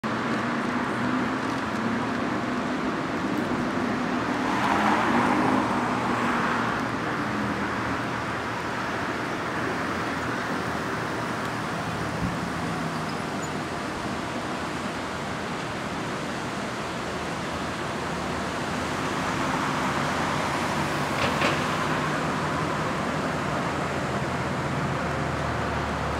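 Steady city street traffic noise, swelling twice as louder vehicles pass, about five seconds in and again around twenty seconds, with a brief sharp sound during the second pass.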